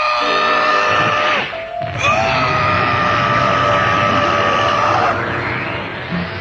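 A cartoon monster's scream, given twice and each cry held at one steady pitch. The first cry breaks off about a second and a half in, and the second starts about two seconds in and holds for about three seconds. Background music plays under them.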